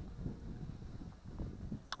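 Faint low rumble of wind on the microphone.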